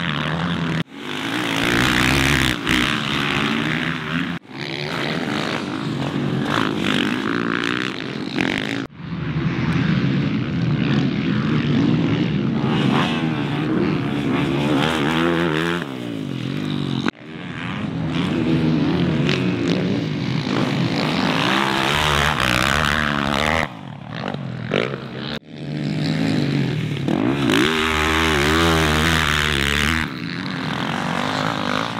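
Motocross dirt bike engines revving up and down as the bikes ride the track, the pitch rising and falling with throttle and gear changes. The sound breaks off abruptly and restarts several times between short clips.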